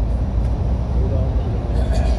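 Steady low rumble of an airliner cabin in flight, the drone of engines and airflow, with faint voices in the middle.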